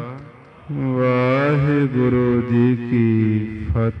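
A man's voice chanting one long, drawn-out phrase in the sustained, intoned style of Sikh Gurbani recitation, after a brief pause at the start.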